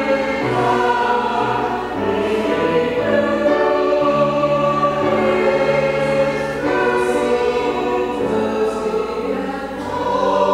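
A group of voices singing a hymn together, with held notes and chords that change every second or two.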